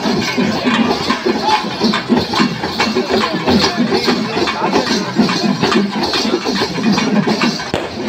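A loud, dense crowd din with drums beating steadily for a group dance.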